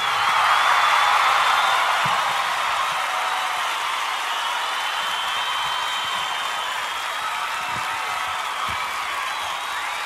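A crowd applauding and cheering, a steady even clatter that is loudest about a second in and then eases slightly.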